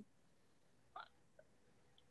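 Near silence: room tone, with one faint, very short sound about a second in.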